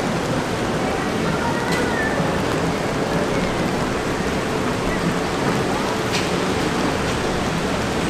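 Steady rain falling, an even hiss of water that holds level throughout.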